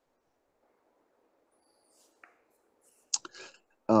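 Near silence, broken by a faint click a little past halfway, then a few sharp clicks with a brief mouth noise near the end, just before a man starts speaking.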